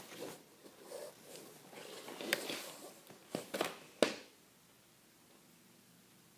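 Rustling and handling of hockey gear, with a few sharp clicks and knocks, the loudest about four seconds in. After it there is near silence.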